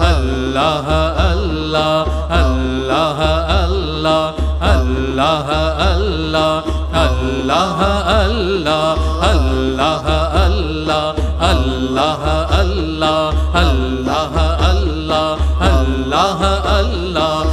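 Sufi dhikr chant: voices singing a melismatic devotional chant of remembrance over a deep, regular beat.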